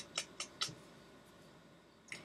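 Handling noise from plush stuffed animals being picked up and held up: four short, sharp rustles and clicks in the first second, then faint room tone.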